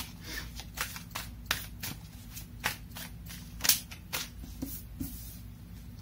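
Tarot cards being handled and shuffled: a string of irregular sharp card snaps and slaps, about one or two a second, the loudest a little after halfway.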